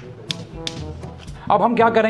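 A few light, sharp taps in the first second over quiet background music, then a voice starts speaking near the end.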